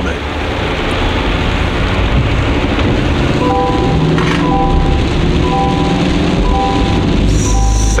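Steady rumble of heavy rain and road noise inside a moving pickup truck's cab. About three seconds in, background music joins, a repeating pattern of short electronic notes at about one a second.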